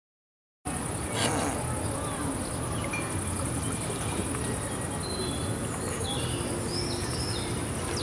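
Outdoor summer ambience that cuts in after a brief silence: a steady high-pitched cricket chirring, with faint voices and a few short bird chirps.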